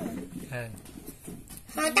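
Speech only: a short spoken utterance about half a second in, and a brief "ừ" at the very end.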